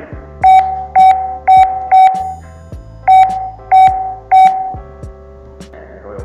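Hikvision DS-K1T343MX face recognition terminal beeping at each touchscreen key press: seven short, identical mid-pitched beeps, four in quick succession about half a second apart, then a short pause and three more.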